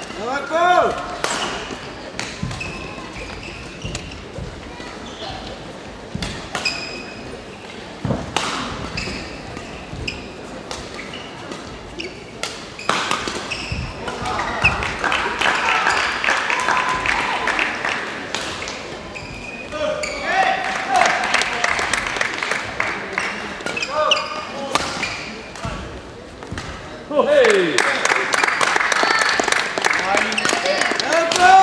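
Badminton play in a large sports hall: sharp racket strikes on the shuttlecock and players' shoes squeaking and tapping on the court floor, over voices and shouts echoing around the hall.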